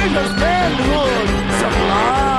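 Live punk rock band playing loud, with a steady low held note and drums under a singer's voice that glides up and down in pitch.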